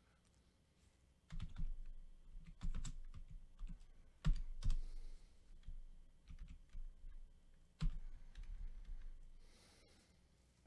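Typing on a computer keyboard: irregular clicks and knocks starting about a second in, with a few louder thumps, the strongest near the middle and again near the end.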